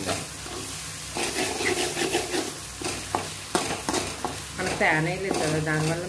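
Tomato masala sizzling in oil in a metal kadai while a metal spoon stirs it, with sharp clicks and scrapes of the spoon against the pan. A brief background voice comes in near the end.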